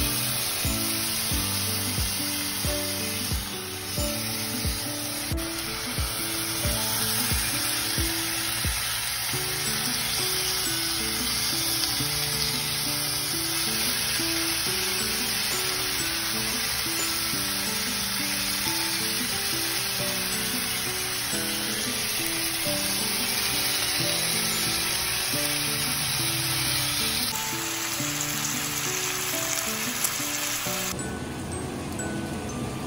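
Raw bacon strips sizzling in a hot oiled nonstick frying pan, a steady frying hiss. Background music plays along with it, with a regular beat for the first several seconds.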